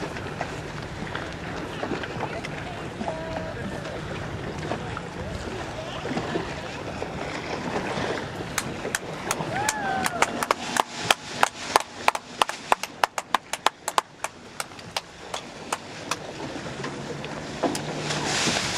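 Wind and water noise with a low steady hum on a boat at sea. From about halfway in comes a long run of sharp clicks, several a second, which are the loudest sound.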